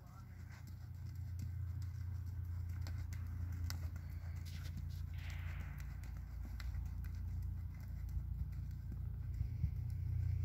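Faint hoofbeats of a horse jogging on a sand arena, irregular soft clicks over a steady low rumble.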